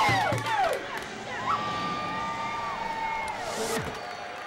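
A team of women players cheering and whooping after their pre-game chant. The loud group yell trails off within the first second, then quieter drawn-out whoops carry on.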